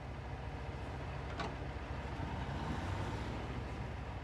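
Semi truck's diesel engine idling: a steady low rumble with a brief click about one and a half seconds in.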